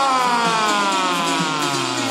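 A ring announcer's shouted voice over the arena PA, drawing out the last syllable of a fighter's name in one long call that slowly falls in pitch.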